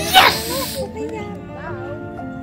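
A short breathy hiss near the start, over background music, with a high voice.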